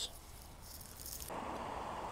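Faint background noise with no distinct event: a quiet hiss at first, then, a little over a second in, it switches abruptly to a steady low outdoor rumble.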